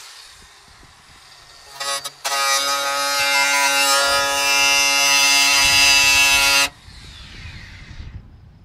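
DeWALT angle grinder with a cut-off disc cutting through a car's sheet-metal roof from underneath. It starts briefly about two seconds in, then runs with a loud, steady high whine for about four and a half seconds and cuts off suddenly.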